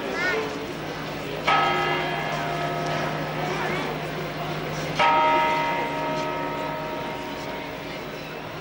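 The great bronze bell on top of Venice's Torre dell'Orologio, struck by the hammers of its two bronze figures: two strikes, about a second and a half in and again at five seconds. Each strike is sudden and rings on with several steady tones that fade slowly.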